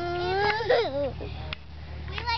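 A toddler's long wordless vocal sound, rising in pitch and then falling away and breaking off about a second in.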